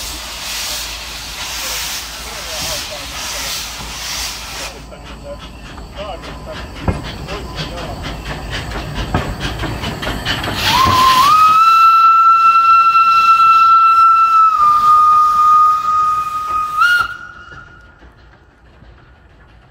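Small steam locomotive hissing steam, in pulses at first, then a long steam-whistle blast about eleven seconds in that holds one steady tone for some six seconds, dips slightly in pitch partway, steps back up and cuts off near the end.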